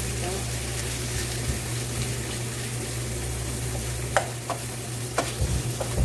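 Butter melting and sizzling with ground chicken in a metal wok, stirred with a wooden spatula. A steady low hum drops out about four seconds in, and a few sharp knocks of the spatula against the pan follow.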